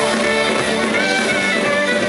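Live band playing an instrumental passage: a fiddle melody over electric guitar, bass and drums, with the melody moving in short stepping notes.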